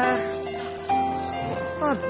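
Background music of held, sustained notes, the chord changing about a second in, with a voice briefly at the start and again near the end.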